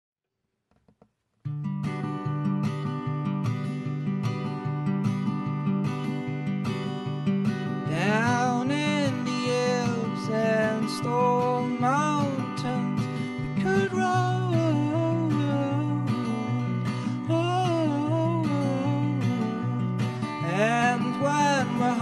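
Acoustic guitar strummed in a steady rhythm over sustained low cello notes, starting about a second and a half in. A higher bowed string melody with vibrato joins about eight seconds in.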